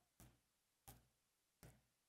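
Near silence, broken by three faint short clicks spaced under a second apart.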